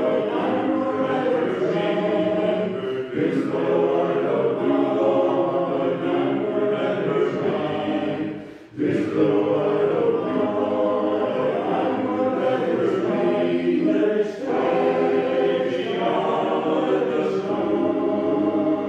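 A men's chorus singing unaccompanied in full harmony, with a brief break for breath about nine seconds in and a shorter one near the fourteen-second mark.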